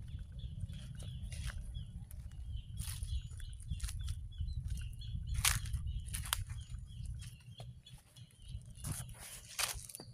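Footsteps crunching and rustling through long grass and dry teak leaves, over small birds chirping repeatedly. A low wind rumble on the microphone runs underneath.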